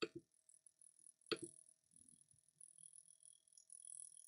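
Near silence with two soft clicks, one at the start and one about a second later, then faint tapping: typing on a computer keyboard.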